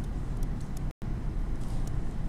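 Steady low rumble of classroom background noise, with a few faint ticks from a stylus writing on a tablet screen. The sound cuts out completely for an instant just before the one-second mark.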